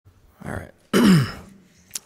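A person clearing their throat: a short first sound, then a louder, longer one about a second in that drops in pitch.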